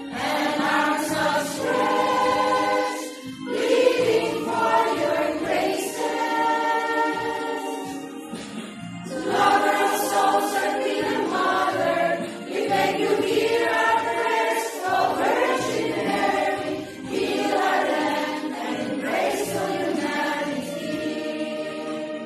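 A choir of nuns singing a hymn to the Virgin Mary, sustained phrases with short breaks between lines.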